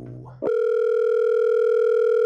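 Telephone ringback tone heard on the caller's end of a call: one steady, even tone that starts about half a second in and lasts about two seconds, the line ringing while the call waits to be answered.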